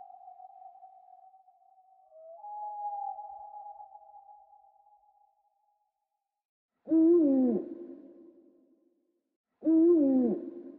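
A steady, hollow tone fades out over the first few seconds. Then, after a short gap, an owl hoots twice about three seconds apart, each hoot falling in pitch and trailing off in an echo.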